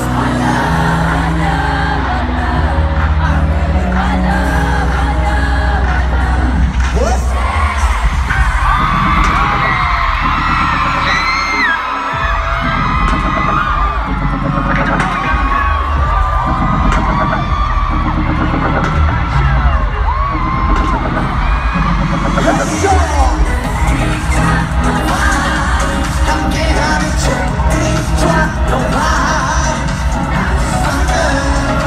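Live pop music played loud over a stadium sound system. A heavy bass beat drops out for about ten seconds in the middle and then comes back, with a large crowd cheering over it.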